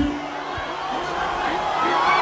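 Large crowd's many voices calling out and cheering at once, with no single voice standing out, growing a little louder toward the end.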